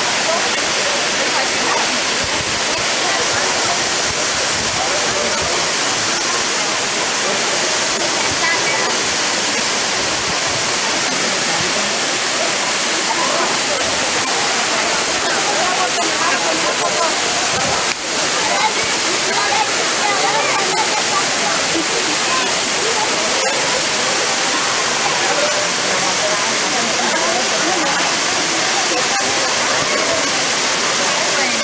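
Waterfall pouring into a rock pool: a steady, loud rush of falling water, with a brief dip about eighteen seconds in.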